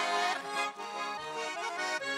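Russian garmon (button accordion) playing a brisk instrumental passage of quickly changing chords and melody notes between the sung lines of a lively folk song.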